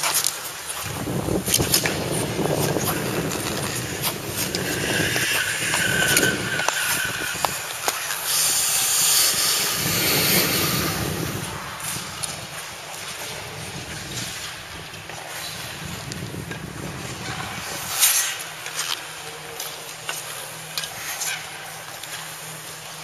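Speed skate blades scraping and hissing on the ice, with wind from the moving camera rumbling on the microphone in uneven surges. The hiss is strongest about halfway through, and there are a few sharp clicks near the end.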